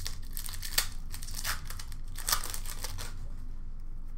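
Plastic wrapper of an Upper Deck hockey card pack crinkling and tearing as it is ripped open. The crackling is strongest for about three seconds, then quieter.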